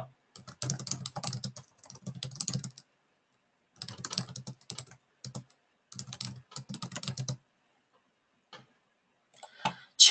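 Typing on a computer keyboard in three quick runs of keystrokes separated by short pauses, followed by a few single key clicks near the end.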